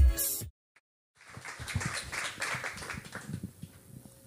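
Electronic dance track playing over the PA, cut off abruptly about half a second in. After a moment of silence, an audience applauds for a couple of seconds.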